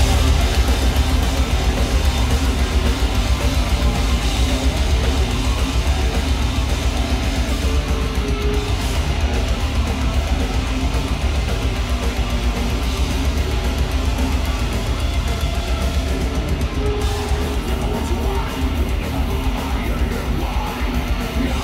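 Melodic death metal band playing live at full volume: distorted electric guitars, keyboards, bass and drums in a fast, dense instrumental passage with a heavy low end.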